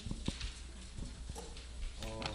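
A few faint, scattered taps and knocks, like handling noise from hands on a desk, book or microphone, over a low steady room hum.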